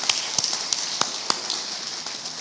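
Hand claps, a sharp clap about three times a second, fading out about a second and a half in, over a steady hiss of softer applause.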